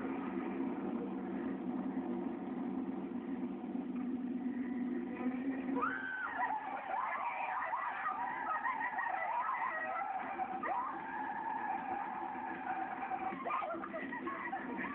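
A moving car heard from inside: a steady low drone, then from about six seconds in, high wavering squeals come in and run on over it.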